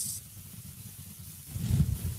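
Faint background noise on a live call's audio feed: a short hiss at the start, then a low rumble that swells near the end.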